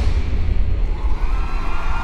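Backing track over the theatre sound system: a pounding beat stops on a final hit, leaving a sustained deep bass rumble, with steady high held notes fading in about halfway through.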